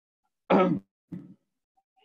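A person clearing their throat: one loud, short rasp about half a second in, then a shorter, quieter one.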